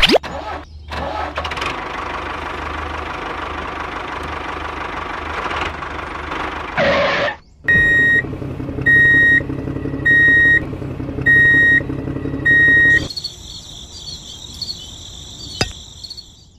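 Toy-vehicle electronic sound effects. First an engine sound runs for about seven seconds. Then six evenly spaced high beeps, about one a second, play over a steady hum, and a high warbling electronic tone follows near the end.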